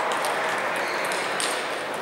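Table tennis balls clicking irregularly against bats and tables, a few sharp hits with the strongest about one and a half seconds in, over the steady hubbub of a hall full of matches.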